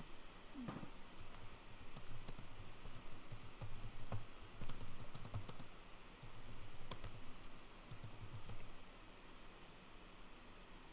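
Typing on a computer keyboard: a run of irregular key clicks with soft thuds, starting about half a second in and thinning out near the end.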